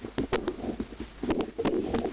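Camera shutters clicking in quick, irregular succession, several a second, over a low warbling sound.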